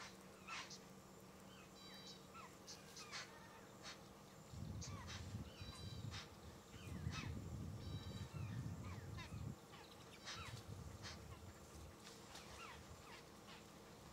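Faint wild birdsong: many small birds giving short chirps, whistles and calls, scattered throughout. A low rumble comes in about four seconds in and fades out about five seconds later.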